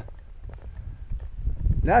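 Low rumble of wind and movement on the microphone, with faint scattered knocks, growing louder near the end.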